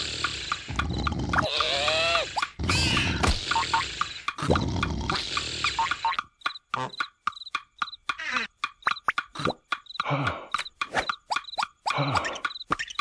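Cartoon soundtrack: comic sleeping and snoring vocal noises in long bursts about a second apart, over a light steady ticking. About halfway through they give way to a quick run of sharp clicks and short squeaky cartoon vocal cries.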